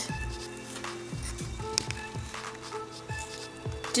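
Quiet background music with sustained tones and soft, low beats.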